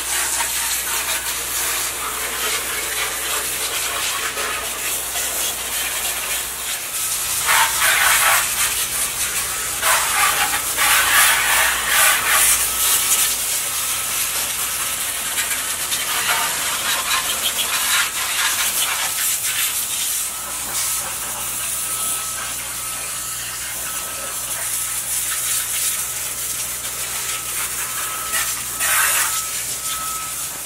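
Water jetting from a hand-held hose spray wand onto a scooter's engine and bodywork, rinsing off cleaner. It makes a steady hiss of spray that swells louder and splashier in several stretches as the jet hits the engine and panels. From about halfway, a faint repeating beep sounds under it.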